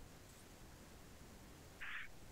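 Near silence: room tone in a quiet meeting room, with one brief soft hiss of noise near the end.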